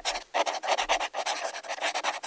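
Rapid scratchy crackling noise, a sound effect over a section title card, starting a moment in and lasting about two seconds.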